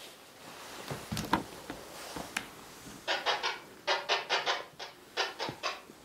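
A two-way radio (walkie-talkie) giving off short crackling, buzzy bursts, several a second, from about three seconds in until near the end, after a few soft knocks about a second in.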